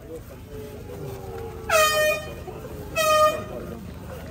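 Air horn sounding two short blasts a little over a second apart, the second slightly shorter, as the signal that starts the race.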